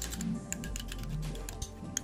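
Metal spoon stirring a thick gel mixture in a glass bowl, making quick irregular clicks and taps against the glass, over background music.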